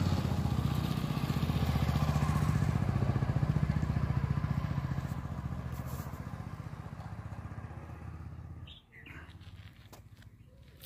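A motor vehicle engine running with a low, rapid, even beat. It grows a little louder over the first few seconds, then fades away and dies out shortly before the end.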